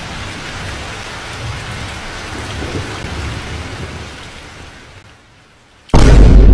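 Rain falling steadily with a low rumble of thunder, fading away over the last second. It is cut off by a sudden, very loud boom right at the end.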